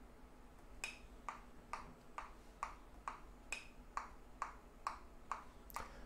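Metronome clicking in three-four time, a little over two beats a second, with a brighter accented click on every first beat; it starts about a second in.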